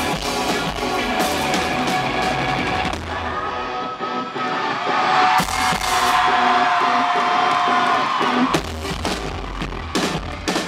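Live rock band playing an instrumental passage on electric guitars and drums. About three seconds in, the bass and kick drum drop away, leaving held guitar notes over lighter drumming, and the full band comes back in near the end.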